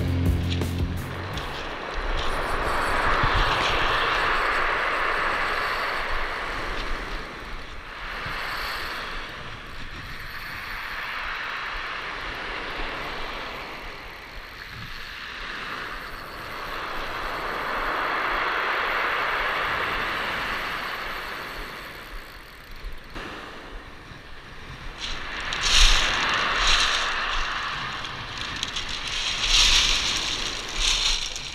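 Surf breaking and washing up a steep pebble beach: a hissing wash that swells and fades every several seconds. Near the end, louder clattering and crunching of the beach pebbles.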